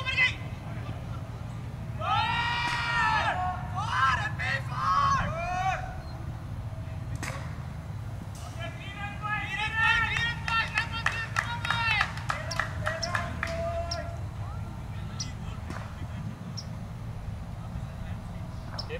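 Players on a cricket field shouting calls to each other in two spells, high-pitched and drawn-out, over a steady low rumble.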